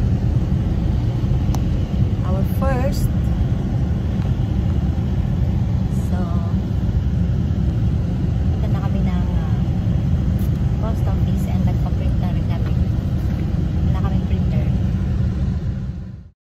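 Steady low rumble of a moving car heard from inside the cabin: engine and road noise while driving.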